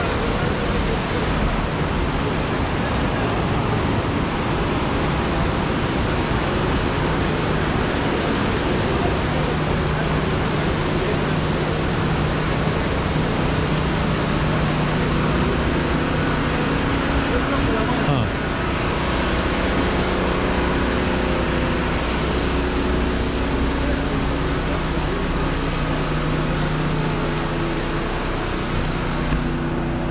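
Loud, steady rush of a fast whitewater mountain river, with people talking faintly behind it.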